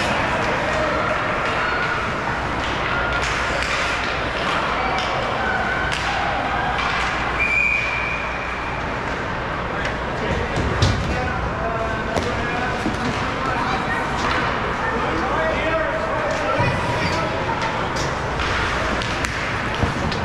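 Ice rink ambience during a youth hockey game: spectators and players talking and calling out, with scattered knocks of sticks and puck on the ice and boards. A short whistle blast sounds about seven and a half seconds in, and play stops after it.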